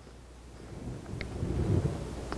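Low rumble of handling noise on a clip-on lapel microphone during a pause in speech, growing in the second half, with a faint tick about a second in.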